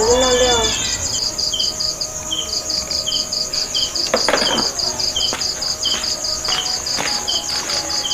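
Crickets chirping at night: a steady, fast-pulsing high trill that runs on without a break, with a second insect's short chirps repeating at an even pace over it.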